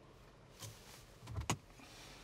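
A car door of a Porsche Cayenne: a short faint rustle, then a low thud and a sharp latch click about a second and a half in as the door shuts.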